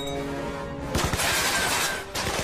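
Film music playing, cut about a second in by a sudden loud shattering crash, with sparks and debris flying, that lasts nearly a second.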